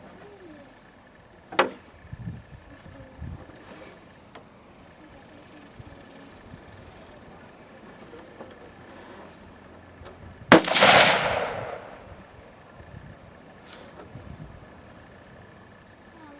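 A single rifle shot from a Stag Arms AR-15-type rifle chambered in 6.8 SPC, about ten seconds in: a sharp crack followed by an echo that dies away over a second or so.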